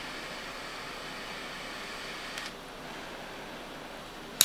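Butane torch lighter's jet flame hissing steadily while lighting a cigar; about two and a half seconds in there is a faint click and the hiss drops a little.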